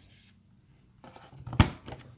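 Stampin' Up! Envelope Punch Board's punch pressed down on cardstock, rounding a corner with its reverse side: one sharp snap about one and a half seconds in, with a few small clicks of paper and board around it.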